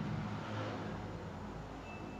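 Steady low background hum with no speech: room tone, with a faint thin high tone near the end.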